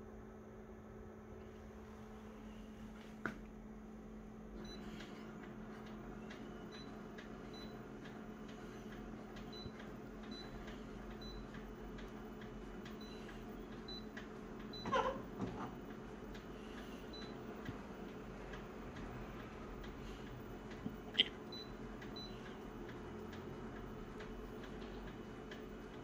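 Konica Minolta bizhub C227 copier humming steadily, with short high beeps from its touchscreen panel as settings are pressed. A few sharp knocks stand out, the loudest about halfway through.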